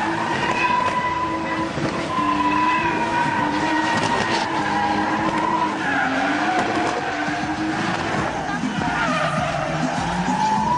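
Toyota Supra drifting: the engine is held at high revs, its pitch sliding up and down every few seconds as the throttle is worked, over steady tyre squeal from the sliding rear wheels.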